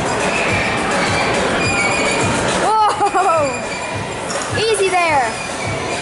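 Busy indoor trampoline-park din of crowd babble and background music. Two high-pitched shrieks fall in pitch, about three and five seconds in.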